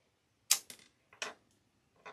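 Two sharp clicks from small hard objects handled at a craft table, about three-quarters of a second apart, the first the loudest.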